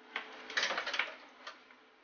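Coaxial camera cables being handled at the back of a DVR: rustling with a few sharp clicks in the first second and a half, as BNC connectors are pushed onto the video inputs.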